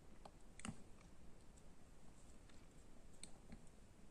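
Near silence with a few faint, short clicks: fingertip taps on a smartphone touchscreen, the clearest one just under a second in.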